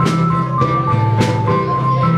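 A live rock band playing an instrumental passage: held organ-like keyboard notes over a sustained low line, with a drum and cymbal hit a little under twice a second.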